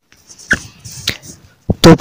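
Two faint, sharp clicks about half a second apart, then a man's voice begins near the end.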